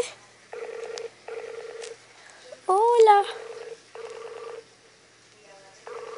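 Skype outgoing call ringing tone from a tablet speaker, unanswered: pairs of short warbling rings, each about half a second, with pauses between the pairs. A brief voice cuts in about three seconds in.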